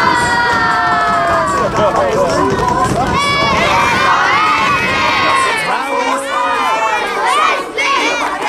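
A group of young boys cheering and shouting together. It opens with a long held shout that falls in pitch, then breaks into many overlapping excited shouts and whoops.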